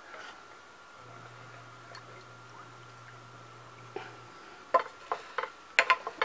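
Wooden spatula in a skillet of heating cream, making a few sharp knocks against the pan near the end. Before that it is mostly quiet, with a faint low hum for a few seconds.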